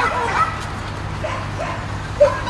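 A dog barking a few short times, mostly in the first half second, with fainter barks later.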